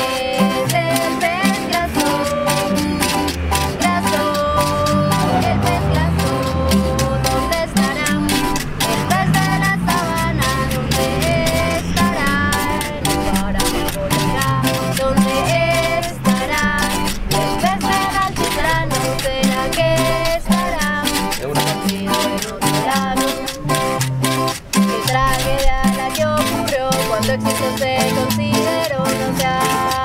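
A folk song: singing accompanied by strummed acoustic guitars and smaller guitar-like string instruments.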